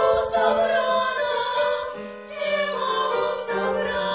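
A small ensemble of teenage girls singing together in several-part harmony, phrase after phrase.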